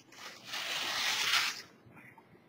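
Rotary cutter's round blade rolling through woven fiberglass cloth on a table, a steady hiss lasting about a second and a half.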